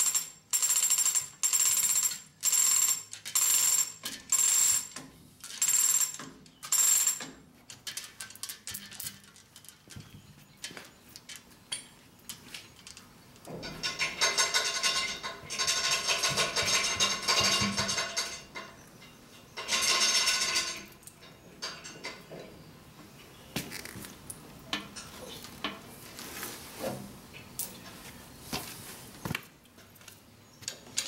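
Chain hoist being worked by hand to lift a heavy cast-iron casting: the metal chain clinks and rings in about ten even pulls, one every second or less. About halfway through there are two longer stretches of chain rattling. After that come scattered light clinks and clicks.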